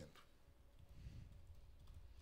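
Near silence: room tone, with a faint click or two about halfway through.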